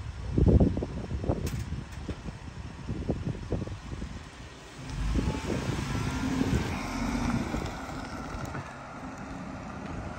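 A work van's engine pulls away and drives off, a low rumble that swells about five seconds in with a faint rising whine as it accelerates, then fades. Loud low rumbling bursts come in the first second or so.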